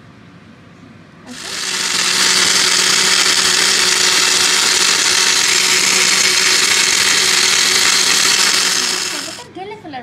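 Countertop blender running steadily for about eight seconds, churning ice cubes with milk, mango juice and yogurt into a drink. It starts about a second in and stops just before the end.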